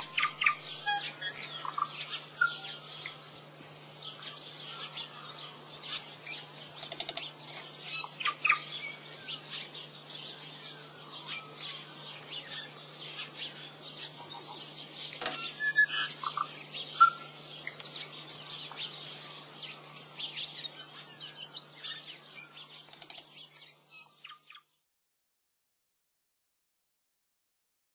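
Many birds chirping densely and continuously, with a faint steady low hum underneath; it all cuts off abruptly near the end.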